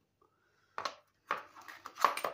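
A sharp metallic knock about a second in, then scraping and clicking and another knock near the end: a new ball bearing being pressed and tapped into a lawn mower wheel hub with a socket.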